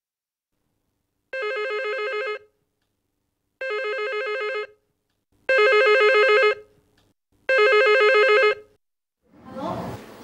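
Electronic telephone ringing four times, each ring a fast warbling trill about a second long with a pause between; the last two rings are louder than the first two.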